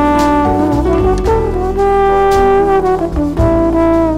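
Trombone playing a slow melodic jazz solo of long held notes, backed by bass and drums with occasional cymbal strikes.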